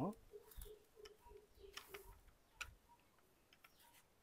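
Near silence, with a few faint clicks and a faint broken hum in the first half.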